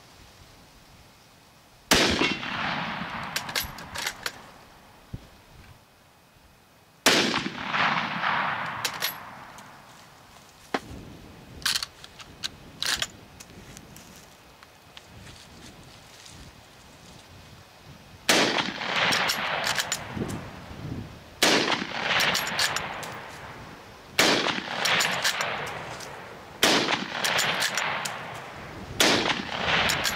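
Gewehr 98 bolt-action rifle in 8x57mm firing seven shots, each followed by a long echo. Two shots come about five seconds apart, then five come faster, about one every two and a half seconds, with the clicks of the bolt being worked between them.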